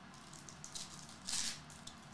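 Glossy trading cards sliding and rustling against each other as a pack is flipped through by hand, with faint clicks and one brief, louder swish about a second and a half in.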